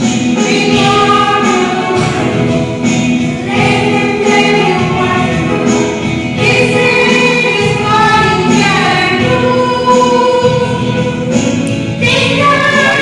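A group of children singing together into microphones, a slow prayer-style song with long held notes.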